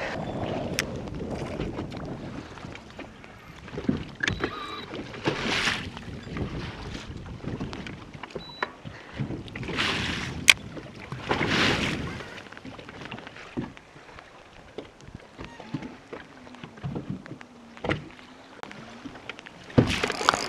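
Small waves lapping against a fishing boat's hull, with wind gusts on the microphone giving several short swells of hiss and a few scattered knocks and clicks.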